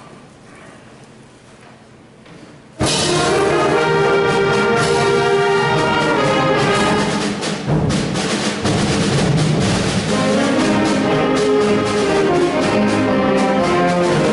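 High school symphonic band of brass, woodwinds and percussion playing a march; after a near-quiet pause it comes in all together and loud about three seconds in, and plays on at full volume.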